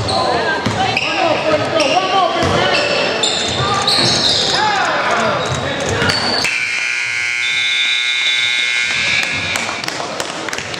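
Gym scoreboard buzzer sounding one steady tone for about three seconds, starting about six and a half seconds in, marking the end of the game. Before it come the shouts of players and spectators and a basketball bouncing on the hardwood court.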